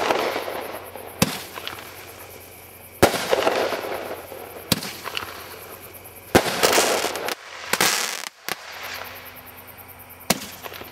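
Consumer aerial fireworks firing and bursting: a series of sharp bangs about one and a half seconds apart, some followed by a drawn-out hissing crackle.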